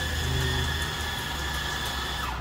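A steady high-pitched machine whine over a low hum, the running noise of café equipment.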